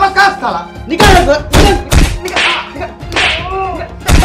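A wooden stick whacking a hand on a wooden ticket counter: three sharp hits in quick succession, starting about a second in.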